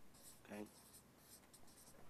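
Near silence with faint, intermittent scratching of writing, and a man briefly saying "OK?" about half a second in.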